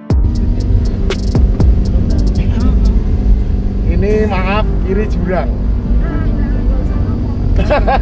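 A Toyota Avanza's engine and tyres, heard from inside the cabin, giving a loud, steady low rumble as the car climbs a steep mountain road.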